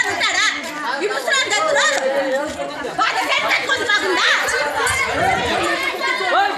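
Several people talking and calling out over one another, a tangle of overlapping voices with no single speaker clear.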